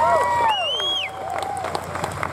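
Audience whooping and cheering, several rising-and-falling calls overlapping in the first second, with scattered clapping.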